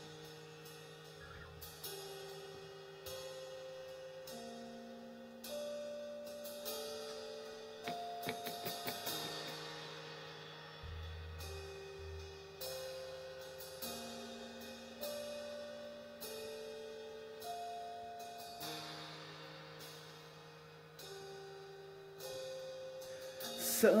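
Soft instrumental intro to a slow ballad: held chords that shift every second or two, with light percussive taps above them.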